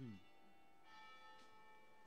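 Faint church bells ringing, their tones hanging on, with a new strike about a second in. A brief low sound falling in pitch comes right at the start.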